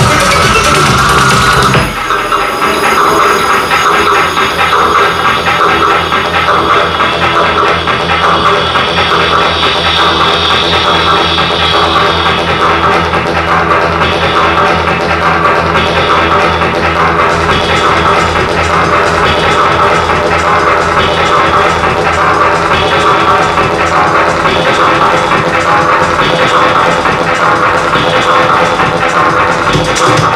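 Loud electronic dance music from a DJ set, with a fast, steady, repeating beat and heavy bass. A rising sweep builds and breaks about two seconds in, and the track then drops back into the full beat.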